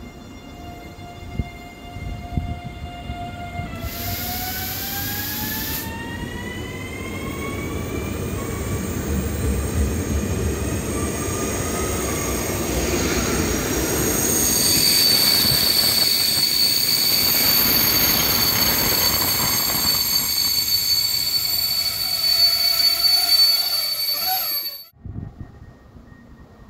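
Czech electric locomotive, likely a class 242 'Plecháč', hauling passenger coaches past. A whine begins to rise in pitch about four seconds in, then the train rumbles by loudly with a high, steady wheel squeal. The sound cuts off abruptly near the end.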